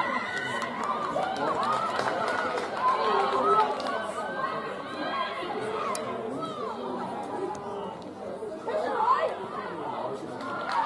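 Many voices calling and shouting at once on and around a rugby pitch, players and sideline spectators overlapping so that no single speaker stands out.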